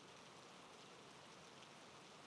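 Near silence: a faint, steady hiss in a pause of the narration.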